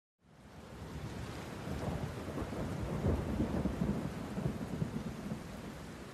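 Steady rain with low rumbling thunder, fading in over the first second and easing off near the end: a rain-and-thunder ambience layered into the opening of a chill electronic track.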